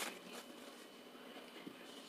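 Quiet room tone with a single faint click about one and a half seconds in.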